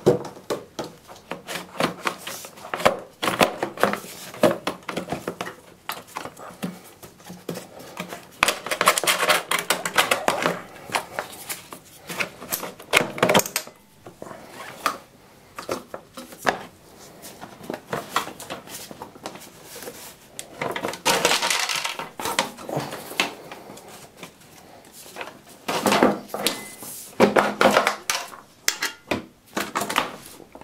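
Handling noises of a scooter's rear brake cable being pushed and worked through the frame: irregular clicks, taps and knocks, with several longer rubbing scrapes as the cable drags against metal and plastic.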